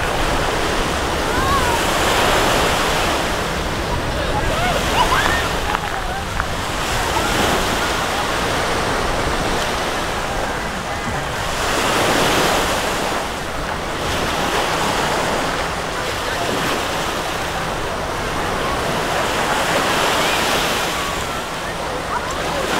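Small waves washing up on a sandy beach, the wash swelling and fading every few seconds, with wind buffeting the microphone and the faint voices of people on the beach.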